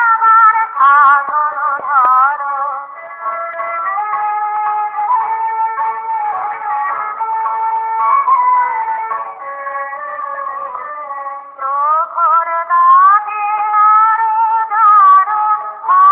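Music: a singing voice carrying a melody with wavering, gliding pitch over light accompaniment. It is softer and steadier through the middle, then louder again after about twelve seconds.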